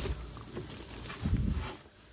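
Handling noise: rustling as a sleeve and hand brush close past a handheld camera while reaching behind furniture, with a dull bump about a second and a half in.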